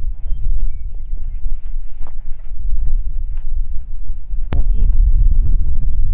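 Wind buffeting the microphone, a steady low rumble, with one sharp click about four and a half seconds in.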